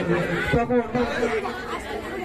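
Mostly speech: a man talking into a microphone, with other voices chattering underneath.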